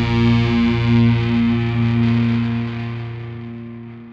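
A distorted electric guitar chord is held at the end of a rock song. It rings with a slight pulsing and fades steadily from about halfway through.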